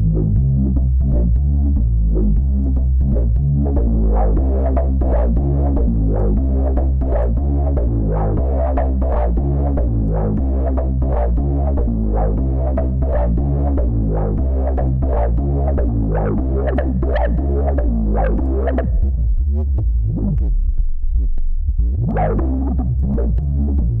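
Synth bass line from the Softube Monoment Bass sampler synth looping over a kick-drum beat, its tone changing as the filter cut-off and resonance are turned. About three quarters of the way through the bass goes dull, then brightens again with a rising resonant sweep.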